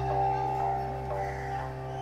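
Drama background score: soft sustained notes entering one after another over a steady low drone.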